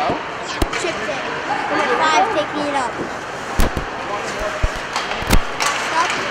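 Ice hockey play in a rink: several sharp knocks of sticks and puck, the loudest about three and a half and five and a quarter seconds in. Players' and spectators' voices carry underneath.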